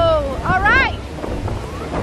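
Gusty wind buffeting the microphone with a steady low rumble. A short voice sound that rises and falls comes about half a second in.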